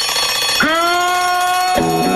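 Programme jingle music: a held note swells in about half a second in, and near the end a rhythmic tune with bass starts.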